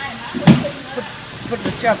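A man speaking haltingly, pausing between words, over a steady hiss of machinery, with one sharp loud sound about half a second in.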